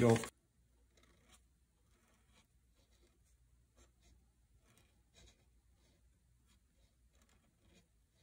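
Black felt-tip pen writing the kanji 後 on paper: a series of faint, short scratching strokes, one after another.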